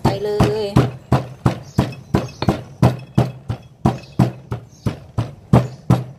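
Stone pestle pounding roasted peanuts and palm sugar in a granite mortar, steady thuds about three a second.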